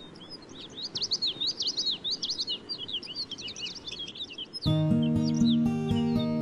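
Birds chirping, many quick overlapping calls over a faint outdoor rumble. Near the end music with plucked notes comes in suddenly and becomes the louder sound.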